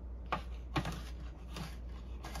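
Knife chopping garlic on a cutting board: four short, sharp strikes about two a second, over a steady low hum.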